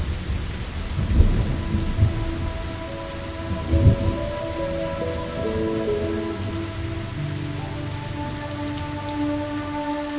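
Steady rain falling, with low rumbles of thunder swelling and fading over the first four seconds. Soft sustained music notes hold and shift beneath it.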